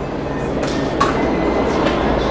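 Blender running steadily, grinding dates and walnuts into a crumbly base mixture.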